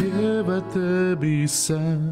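Devotional worship song sung to acoustic guitar accompaniment, the voice holding long notes and stepping between pitches in a slow, chant-like melody.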